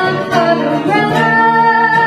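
Live acoustic band: a singer performing into a microphone over two acoustic guitars, holding one long note through the second half.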